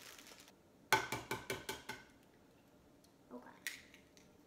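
Brief crinkle of a plastic cake-mix bag, then a quick run of about eight sharp knocks against a ceramic mixing bowl that ring briefly, with a couple of softer taps near the end.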